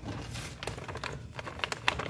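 Hands rummaging in a cosmetics bag, with rustling and crinkling of packaging and a scatter of light clicks and taps as items are handled.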